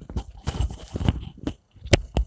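Close-miked ASMR mouth sounds: an irregular run of wet clicks and pops from lips and tongue, with fingers working at the mouth. The loudest pop comes near the end.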